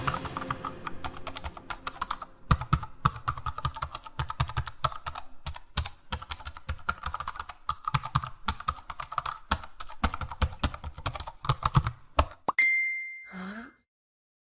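Fast, irregular typing on a computer keyboard, a dense run of clicks that stops about twelve seconds in, followed by a short ding.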